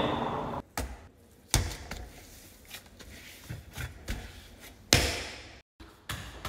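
Scattered knocks and thumps of hands and food-prep items on a shop counter while a çiğ köfte wrap is being made, the loudest about a second and a half in and another near the end.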